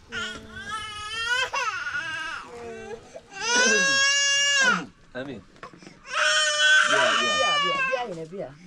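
A young child crying: a few falling wails early on, then two long, high-pitched drawn-out cries in the second half.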